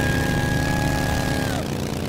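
Motorcycle engines rumbling low and steady, with a high steady tone held over them that glides off about one and a half seconds in.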